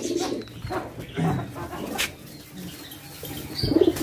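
Domestic pigeons cooing low in a loft, with a single sharp knock about halfway. Near the end comes a loud flurry of wing flaps as a pigeon is grabbed by hand.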